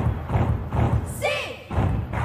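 Live pop dance song with a heavy kick drum about four beats a second and voices over it. About a second in, the beat drops out for half a second under a short sliding vocal sound, then comes back.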